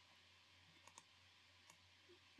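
Near silence with three faint computer mouse clicks, two close together about a second in and one near the end.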